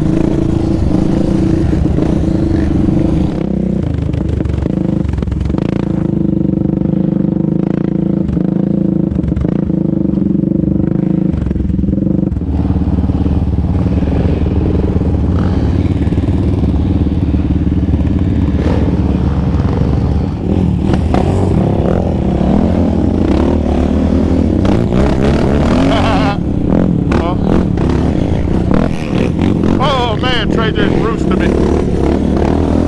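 Single-cylinder four-stroke engine of a Yamaha Raptor 700R ATV with an aftermarket Monster exhaust, running steadily at trail speed. Past halfway the revs rise and fall again and again with the throttle.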